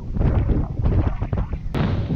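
Wind buffeting the camera's microphone: a loud, gusting low rumble, with one sharp click near the end.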